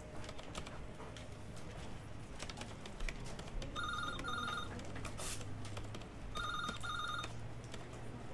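A telephone ringing twice in a double-ring pattern: each ring is two short trilling bursts, a couple of seconds apart. Scattered keyboard typing clicks and a low steady hum run underneath.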